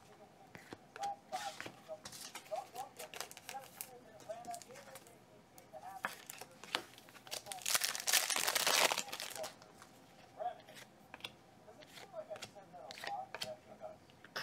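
Hands handling trading cards and plastic card sleeves, with scattered clicks and rustles, then a loud crinkling of plastic or foil wrapping for about a second and a half, eight seconds in.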